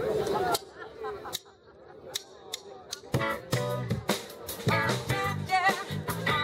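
A live rock band with electric guitars, bass and drums starts its first song about three seconds in, after a few sharp clicks in a quieter stretch.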